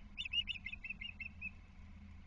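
Osprey calling: a quick series of about eight short, high chirps lasting about a second, fading slightly toward the end. It is the kind of call an osprey gives when another osprey tries to land on its nest.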